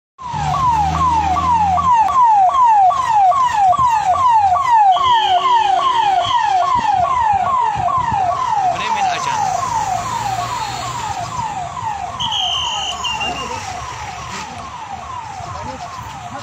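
Convoy escort vehicle's electronic siren repeating a fast falling wail, about two and a half sweeps a second, growing fainter over the last few seconds. Two short high steady tones sound over it, at about five and twelve seconds.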